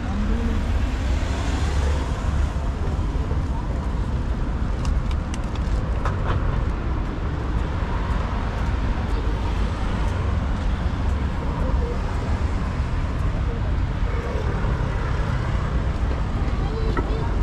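Steady city traffic noise from cars passing on the road alongside, a continuous rumble with no single vehicle standing out.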